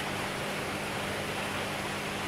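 Steady hiss with a low, even hum underneath: the background running noise of an aquarium shop's water pumps and filtration.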